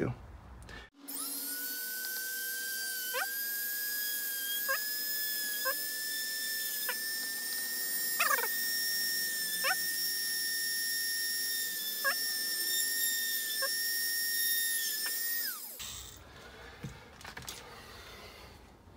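Dremel rotary tool with a thin bit drilling small holes through the RC truck's chassis. It is a steady high-pitched whine that spins up about a second in, dips briefly now and then as the bit bites, and winds down with a falling pitch near the end.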